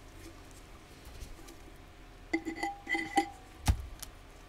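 Hard craft items handled on a table: a few quick ringing clinks a little past halfway, then one sharp thump near the end.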